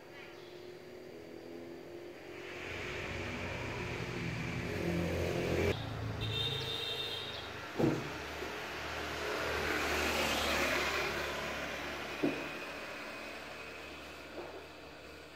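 Road vehicles passing: a swell of engine and tyre noise that cuts off suddenly just before six seconds in, then another vehicle approaching and fading away, loudest about ten seconds in. Two sharp knocks come in between.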